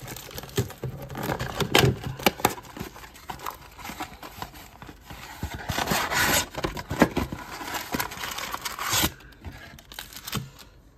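A cardboard trading-card box being handled and its foil packs pulled out: rubbing, scraping and rustling of cardboard and wrappers, with a few sharp taps and louder rustling stretches about six and nine seconds in.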